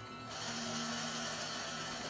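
Suspense film score: a steady hissing drone with a low held note under it, swelling in abruptly about a third of a second in.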